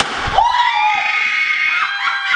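A woman's long, high-pitched scream of excitement, held for over a second, with a second cry starting near the end.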